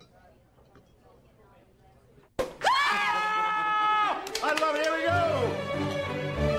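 Quiet room tone, then about two and a half seconds in a loud whooping shout that rises and holds, followed by a second shorter cry. Music with a low bass comes in near the end.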